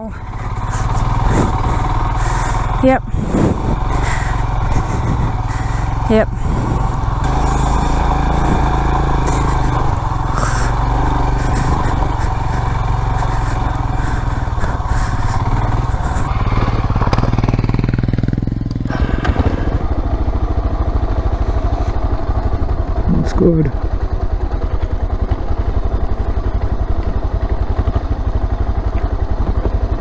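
Single-cylinder adventure motorcycle engine running at low revs down a rough dirt descent, with wind noise over the microphone. About two-thirds of the way through the wind drops away and the engine settles into a slower, even pulsing.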